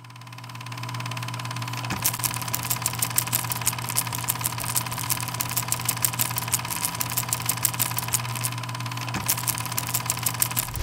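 A machine running: a steady hum that fades in over the first second, joined about two seconds in by fast, evenly spaced clicking, several clicks a second.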